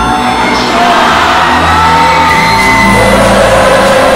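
K-pop concert music played loud through a concert hall's PA and heard from the crowd: a slower stretch of long held notes with lighter bass, while fans shout and whoop.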